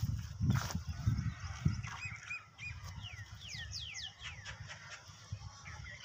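Birds calling: a few short chirps about two seconds in, then a quick run of high whistles sweeping downward. A few dull low knocks come in the first two seconds.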